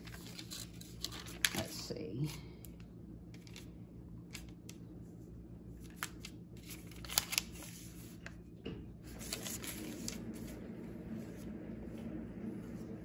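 Light rustling and crinkling of a long paper store receipt being handled and searched through, with scattered short clicks and taps. A faint low murmur comes about two seconds in, and a low steady hum runs underneath.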